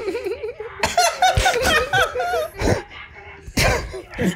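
Several people laughing together in a small room, with high, bubbling laughs through the first half and two loud outbursts near the end.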